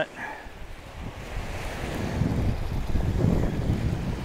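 Wind rumbling and buffeting on the microphone, growing stronger after about a second, over the wash of small surf breaking on the beach.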